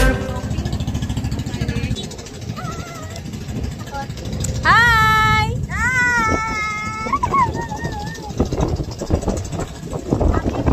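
Small engine of a motorised outrigger boat (bangka) running steadily as it tows a floating cottage. About halfway through, high-pitched voices call out in two long, drawn-out cries, the loudest sounds here.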